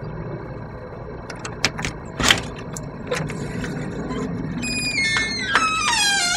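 A door being opened: several sharp clicks from the handle and latch, then a long creak from the hinges with a stepwise falling pitch near the end.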